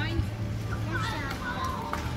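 Children's high voices calling out as they play in a shallow plaza fountain, with a steady low hum underneath.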